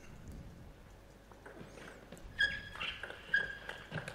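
Table tennis point being played: the ball ticking off the rackets and table, with sports shoes squeaking on the court floor from about halfway through.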